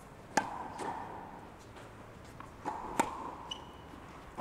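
Tennis balls struck by a racket on one-handed backhands: two sharp pops about two and a half seconds apart, each ringing briefly in the metal-roofed hall, with lighter knocks of the ball around them. A short high squeak comes near the end.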